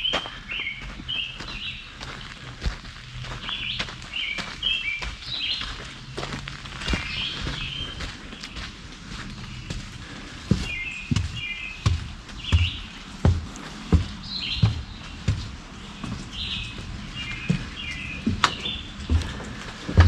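A songbird chirping in short, repeated high phrases. From about eight seconds in, footsteps thump on wooden steps, about one or two a second.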